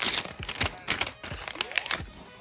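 Thin plastic protective sleeve crinkling and crackling as it is peeled off a smartphone, a quick string of small clicks, loudest at the start, with a short rising squeak near the end.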